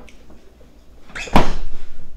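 Refrigerator door being pushed shut: faint handling, then one loud thud about a second and a half in.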